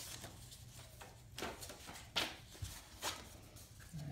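Paper receipts and inserts rustling as they are flipped through and handled, in several short swishes, the loudest about two seconds in.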